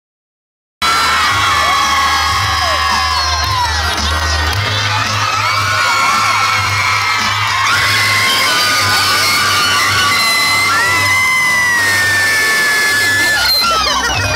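Concert crowd cheering and screaming as the show begins, many high voices shrieking and whooping over one another, some long held screams, over a steady low drone from the sound system.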